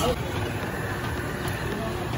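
Busy street ambience: a steady rumble of traffic with indistinct background voices.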